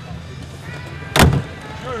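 A single sharp bang about a second in, over background music and a low rumble.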